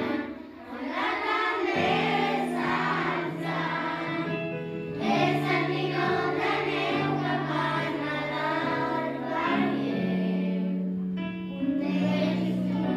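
Children singing a Christmas carol together over an accompaniment of long held low notes.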